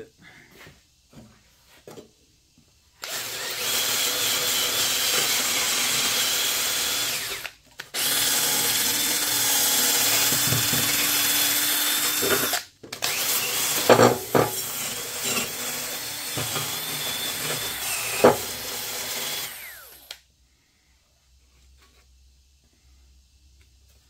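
Power tool spinning a wire brush against the steel mower deck, scouring off rust and grime. It runs in three long stretches with brief pauses between them, with a steady high whine and a couple of sharp knocks in the last stretch.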